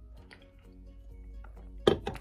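Soft background music, and near the end a single sharp clink as an aluminium drink can is set down on a hard surface.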